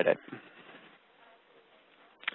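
The tail of a man's spoken word, then near silence: a faint steady hiss of room tone.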